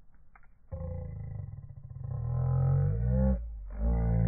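Music: a deep droning instrument with shifting, wavering overtones. It comes in under a second in and breaks off briefly near the end.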